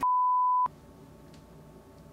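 Bars-and-tone reference beep: a single steady, pure tone that goes with the TV colour bars, lasting about two-thirds of a second. It cuts off sharply, leaving only faint room tone.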